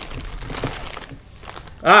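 Plastic packaging crinkling and rustling as a cigar in a clear wrapper is taken out and handled, fading after about a second and a half.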